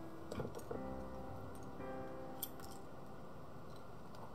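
Light clicks and taps of pencils and a small metal pencil sharpener being picked up and handled on a desk, over soft background music with held notes.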